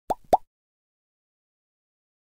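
Two short pop sound effects of a logo intro animation, each quickly rising in pitch, about a quarter of a second apart.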